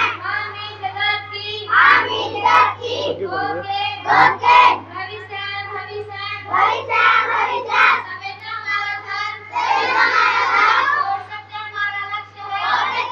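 Young girls singing a song together into stand microphones, amplified over a PA, with a steady low hum running underneath.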